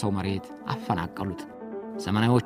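A man's voice over background music, quieter than the narration either side.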